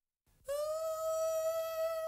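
Silence, then about half a second in a single held note begins in the song's opening. It rises slightly as it starts and then holds steady and fairly quiet.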